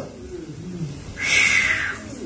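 A person's short, breathy hiss of air lasting under a second, starting about a second in.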